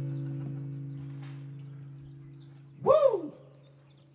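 The band's closing note, a low bass-guitar note with acoustic guitar over it, struck just before and left to ring out, fading steadily. About three seconds in comes one loud, short call that rises and falls in pitch.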